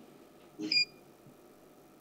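Mostly silence on a telephone line, broken about half a second in by one short blip carrying two thin high tones.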